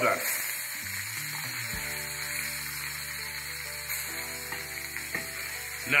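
Lamb chops sizzling in hot oil in a stainless-steel skillet, just flipped to sear the second side. Soft background music with held notes comes in underneath about two seconds in.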